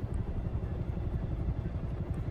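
Steady low rumble of a vehicle's motor, heard from inside its cabin.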